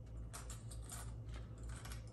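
Faint, scattered small clicks and rattles of hands getting a small square-bill crankbait out of its packaging.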